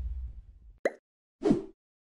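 Outro sound effects: a low rumble dying away, then two short pops about half a second apart, each falling quickly in pitch, the second lower than the first.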